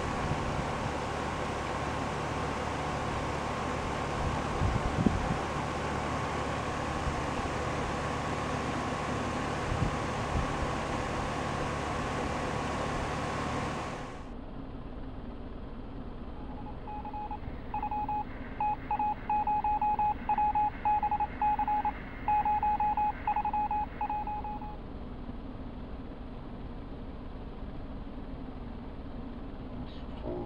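Rheem three-ton air-conditioner condenser running, a steady hum with a faint steady whine and a couple of light knocks. After an abrupt cut about halfway through, a run of short electronic beeps comes at an uneven rhythm for several seconds while the SureSwitch control's count button is pressed.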